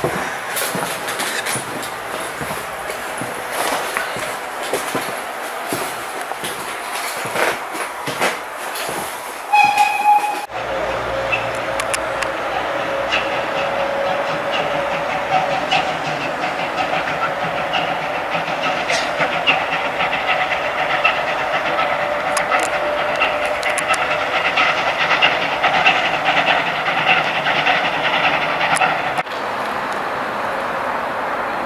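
Rumble and rail clatter of a steam-hauled train heard from inside a vintage passenger coach, with a short high tone about ten seconds in. Then a steam train running on curved track, with a sustained high ringing tone over the running noise for most of the rest.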